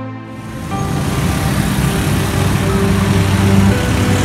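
Street traffic, with the small engines of motorcycles and auto-rickshaws running past, under soft background music. The traffic noise comes in suddenly just after the start and grows a little louder.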